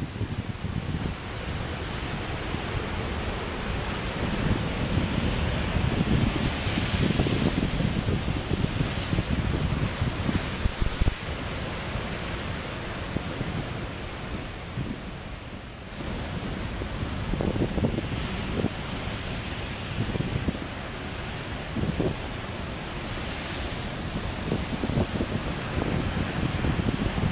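Sea waves breaking against a rock and concrete breakwater, with water spilling off its concrete step: a continuous rush of surf that swells and eases, with wind rumbling on the microphone.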